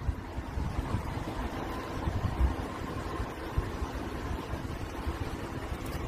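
Wind buffeting the microphone: an irregular low rumble that comes and goes in gusts.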